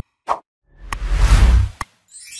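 Sound effects of an animated like-and-subscribe overlay: a mouse click and a pop, then a whoosh with a deep rumble about a second long, with sharp clicks within it and at its end.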